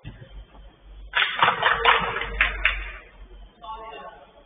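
A loud, harsh, distorted shout from about a second in, lasting roughly two seconds, with fainter voices near the end.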